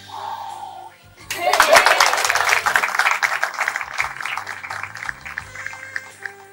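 A group of people clapping, starting suddenly about a second in and fading over the next few seconds, over background music.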